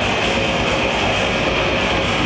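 Death metal band playing live: distorted electric guitar and bass over drums, a dense unbroken wall of sound at a steady loud level, heard from within the crowd.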